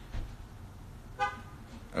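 Low room noise with a soft knock just after the start and one short, high, steady toot about a second in.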